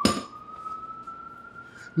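A single sharp clink of kitchenware with a short ring, then a faint siren holding a thin tone that slowly rises in pitch.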